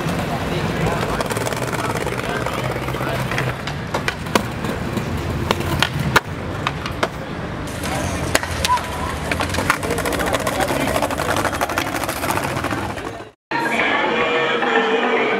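Skateboard wheels rolling on concrete, with a run of sharp clacks from the board popping and landing, thickest between about four and seven seconds in. The sound drops out abruptly for a moment near the end.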